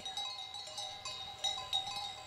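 Bells on a grazing flock of sheep clinking and ringing irregularly at several fixed pitches.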